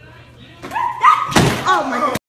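A man's voice cries out as he falls off a hoverboard, then a single loud thud as his body hits the hardwood floor about one and a half seconds in, followed by more vocal sounds from him.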